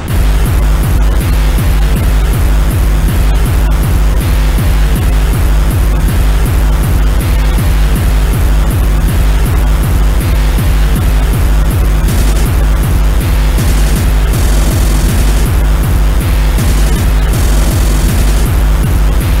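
Speedcore track: a heavy, distorted kick drum comes in right at the start and pounds at a very fast, even rate under harsh, noisy distorted layers. The top end shifts in sections in the second half.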